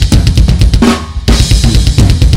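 A drum kit played fast: a quick fill of bass drum, snare and cymbal hits, with a short break just after a second in before the hits start again.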